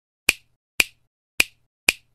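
Four sharp finger-snap-like clicks about half a second apart, a sound effect timed to the title letters popping onto the screen.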